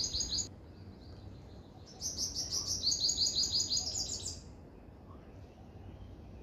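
A songbird singing fast runs of repeated high notes, about seven a second: one phrase ending about half a second in, and another from about two seconds to four and a half seconds.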